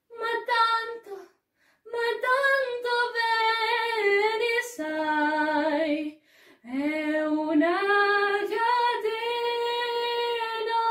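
A girl singing solo and unaccompanied: long held notes in phrases, broken by short breaths about a second in and about six seconds in.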